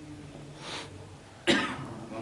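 A man's single sharp cough about one and a half seconds in, preceded by a softer breathy sound.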